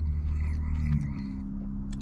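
A man humming "mmm" with his mouth closed while chewing a hot french fry: two held notes, the second a little higher from about a second in, with a low steady hum underneath.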